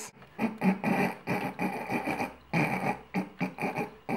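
Suppressed giggling in quick repeated bursts, in two bouts with a short break between them.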